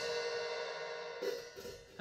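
Open hi-hat cymbals, held open by a Gibraltar Double Drop Clutch, ringing out after a hard stick strike and dying away. The ring is partly cut off a little over a second in, and a hand is at the cymbal edge soon after.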